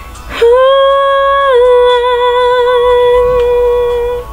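A woman's solo singing voice holding one long, sustained note that begins about half a second in, steps down slightly around a second and a half in, and is held for over three seconds.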